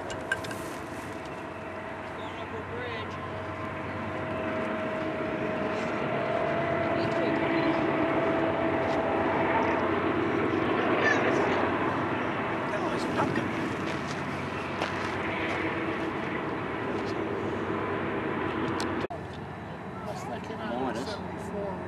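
BNSF diesel locomotives hauling a double-stack intermodal train, their engines droning with a steady whine on top at first. The sound grows louder as the lead units pass below, peaks about eight to twelve seconds in, then eases off, and it breaks off suddenly near the end.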